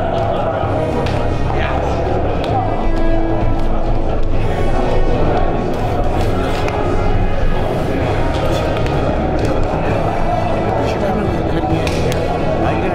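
Background music over the busy chatter of many people talking at once in a large room.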